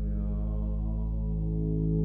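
TTSH ARP 2600 clone synthesizer holding a sustained low drone of layered steady tones, its timbre brightening slightly about a second and a half in.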